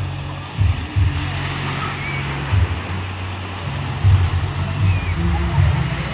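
Small waves breaking and washing on a sandy shore, with wind buffeting the microphone in irregular gusts.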